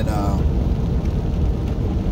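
Steady low road noise inside a moving vehicle's cabin: engine and tyres rolling on wet pavement.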